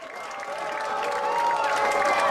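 A large crowd applauding and cheering, clapping under many voices calling out, growing steadily louder.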